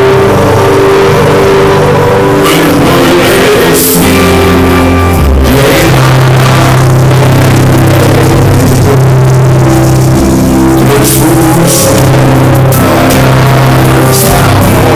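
Live rock band playing loud, with bass guitar, keyboards and drum kit. The full band comes in right at the start, after a short lull, with long held bass and keyboard notes.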